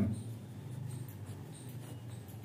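Pen writing on a sheet of paper: short, irregular scratching strokes as it finishes a word and then draws a bracket and an underline, over a faint steady low hum.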